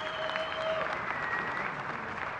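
A large audience applauding in a hall, with a couple of long steady tones held over the clapping for about the first second.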